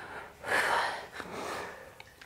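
A woman breathing hard from the effort of a dumbbell exercise, heard close to the microphone: two noisy breaths, a louder one about half a second in and a quieter one about a second later.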